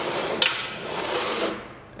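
A Harbor Freight 2.5-gallon metal pressure paint pot being tightened by hand, shifting and scraping on the table as the lid clamp is turned, with a sharp click about half a second in.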